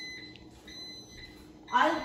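A high, steady whining tone, on and off in stretches of under a second, with a fainter tone an octave above it.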